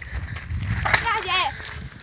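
Homemade plastic-bottle water rocket launching, with a short burst of rushing hiss about a second in. Excited voices shout over a low rumble.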